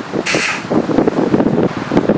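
A person blowing their nose hard into a cloth bandana: a rough, spluttering blast that goes on for over a second.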